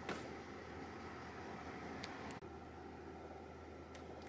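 Faint steady fan hum and hiss, as of a running desktop PC, with a small click near the start and another about two seconds in.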